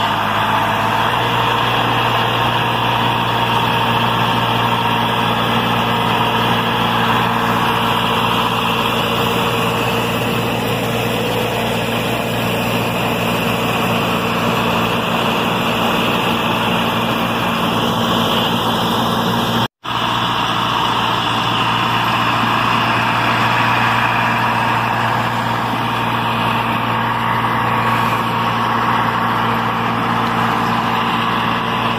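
Tractor engine running steadily under load while pulling an Oliver pull-type corn picker through standing corn, the picker's gathering and husking mechanism adding a dense mechanical clatter and rush. The sound cuts out for an instant about two-thirds of the way through.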